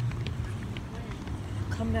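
Handling noise of a phone carried by someone walking: a low rumble with light knocks and scuffs.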